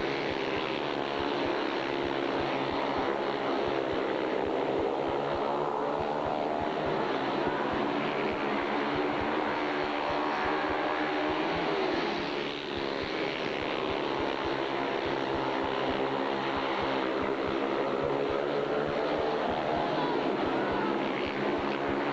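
Several 500 cc single-cylinder speedway motorcycle engines running flat out in a race, their pitch wavering up and down as the riders go down the straights and through the bends. The sound dips briefly about twelve seconds in.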